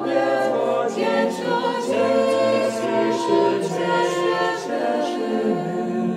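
Small mixed choir of men's and women's voices singing a Polish Christmas carol a cappella in several parts, the notes held and changing together.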